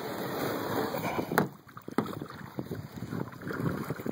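Wind rushing over the microphone, with a few sharp knocks and clunks from the plastic kayak as a person stands and shifts about in it; the loudest knock comes about a second and a half in.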